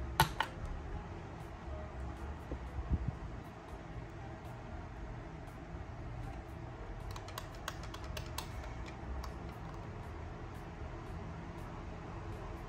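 Sharp plastic clicks of a Fujitsu Lifebook AH530 laptop's power button and keys being pressed: one loud click just after the start, a few around three seconds in, and a quick run of light clicks around seven to nine seconds in, as the laptop stuck on restarting is forced off and powered back on. A steady low fan hum runs underneath.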